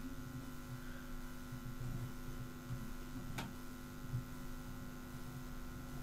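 Quiet, steady electrical hum with faint background noise, and a single faint click a little past halfway through.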